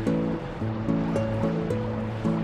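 Background music of held notes that change every quarter to half second, over a steady rushing noise from a running dishwasher.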